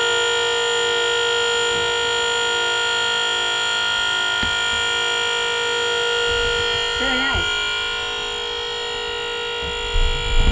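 Moritz dump trailer's electric-hydraulic pump running steadily with a continuous whine as it raises the dump bed.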